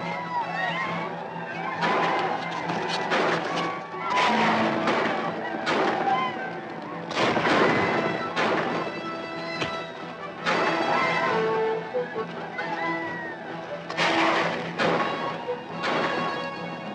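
Dramatic orchestral action music playing throughout, with loud sudden hits from the fight's sound effects landing every second or two.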